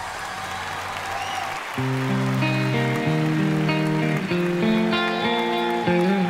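Live stage band playing without singing. A held, quieter passage gives way about two seconds in to a louder section of steady chords that step from one to the next.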